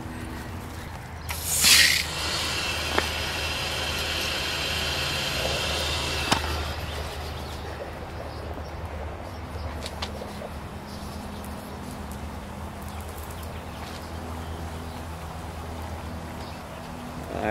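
Sprinkler control valve opened by hand: a short loud hiss of water about two seconds in, then water running through the irrigation line with a steady hiss that fades after about seven seconds.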